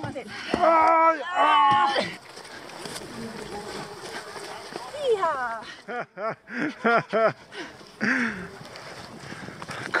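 People's voices shouting and calling out, loud at the start. About two-thirds of the way through comes a quick run of short, rhythmic vocal sounds, over a steady rustle of outdoor and movement noise.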